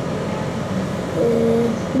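Steady background noise of traffic and room hum. A little past the middle, a child gives one drawn-out, level "uhh" while thinking of an answer.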